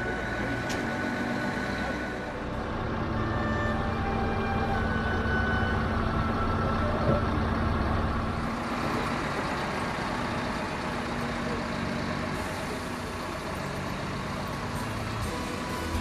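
Heavy diesel engine of a mobile crane truck running with a steady low rumble, heaviest in the first half, with music playing underneath.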